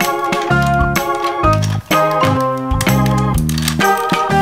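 Background music: a keyboard tune of short pitched notes and chords in a steady, regular rhythm.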